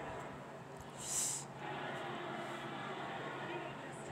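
Faint television broadcast audio of the race coverage, heard through the TV's speaker in a quiet room, with a brief hiss about a second in.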